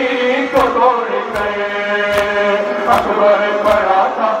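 Men's voices chanting an Urdu nauha, a Shia mourning lament, with the crowd singing along. Sharp, evenly spaced hand strikes of chest-beating (matam) keep time under the chant, about five of them, a little faster than one a second.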